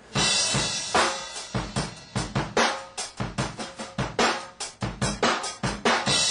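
Rock drum kit playing a busy pattern of kick, snare and cymbal hits. It opens with a loud hit that rings on for about a second.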